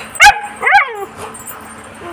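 A puppy yelping twice: a short sharp yelp, then a longer one that falls in pitch.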